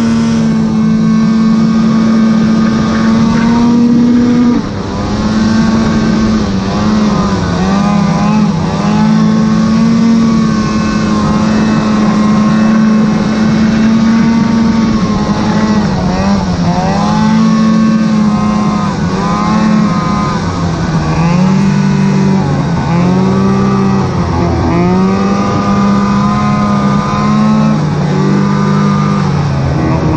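Arctic Cat snowmobile engine running hard through deep powder, its pitch rising and falling repeatedly as the throttle is worked, with a brief drop in level about four and a half seconds in.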